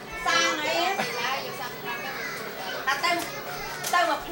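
Overlapping chatter of adults and young children talking.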